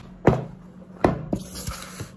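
A large plastic mixing bowl being handled: two sharp knocks, about a third of a second and a second in, then a soft scraping as the soft dough is pulled out of the bowl.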